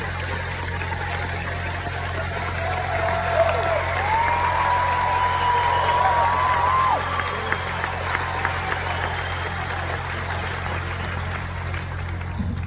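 Crowd applauding and cheering, with drawn-out whoops rising a few seconds in and fading after about seven seconds, over a steady low hum.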